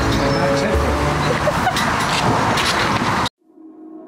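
Wind buffeting the microphone with voices mixed in; it cuts off abruptly a little after three seconds in. A quiet music track then begins to fade in.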